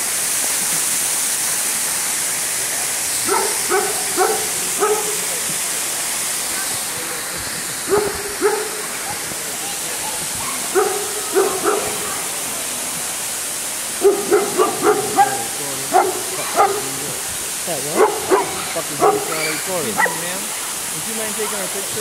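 Steady rush of a waterfall, with a dog barking in short runs of several barks, more quickly near the end.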